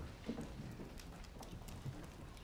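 Faint footsteps and shuffling of several children on a wooden floor, a few soft irregular knocks as they move into a line.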